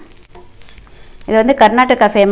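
Dosa faintly sizzling on a hot tawa, then a woman starts speaking a little over a second in.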